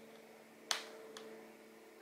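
A sharp small metallic click about two-thirds of a second in and a fainter one shortly after: a fine steel watchmaker's tool working at the top train plate of a Seiko 7548 quartz movement. A faint steady hum runs underneath.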